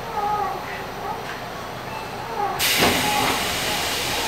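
Sliding passenger doors of a Tobu 9050 series train opening: a sudden loud hiss about two-thirds of the way in as the doors part and run open, over faint voices in the car.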